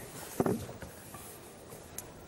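A single soft knock about half a second in, then faint rustling and handling noise from musicians readying their instruments before playing.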